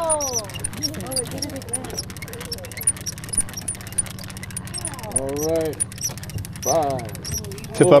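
Conventional trolling reel being cranked steadily, ticking lightly about three times a second, over the steady low hum of the boat's idling engine.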